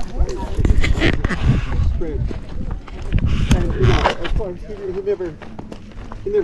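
Rough, rumbling handling noise from a hand covering the camera and its microphone, in two loud bursts near the start and about three seconds in, with people's voices talking in between.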